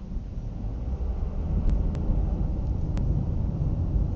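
Low rumble of a car driving, engine and road noise heard from inside the cabin through a cheap dash camera's microphone, growing louder over the first second and a half. A few faint ticks come in the second half.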